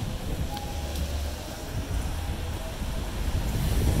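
City street ambience: a low, uneven rumble of wind buffeting the microphone over distant traffic, growing a little louder near the end.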